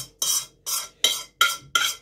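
A metal utensil scraping and knocking against a pan, about five short strokes at roughly two a second, each with a brief metallic ring, as cooked shrimp filling is scraped out of the pan.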